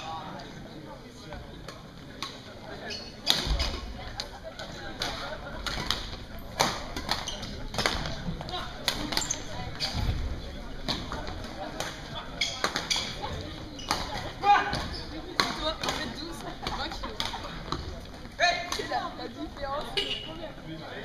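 Badminton rally in a reverberant sports hall: sharp racket hits on the shuttlecock and footfalls on the court floor, over indistinct background voices. About halfway through there is a heavy thud as a player dives onto the floor.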